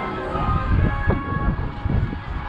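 Wind rumbling in uneven gusts on the microphone, with faint music playing in the background.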